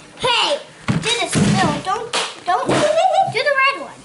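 Voices talking, with a few short dull knocks in between.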